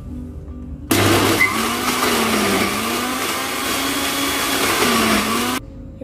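Countertop electric blender switched on about a second in, its motor running with a pitch that dips and rises as it purées grapes, then cutting off suddenly near the end.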